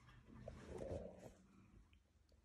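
A dog gives one short, faint, low grumbling sound, from about half a second in to just past one second.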